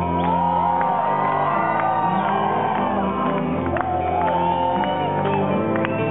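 Rock band playing live, holding sustained chords while the audience sings along and shouts, heard from within the crowd in a large hall.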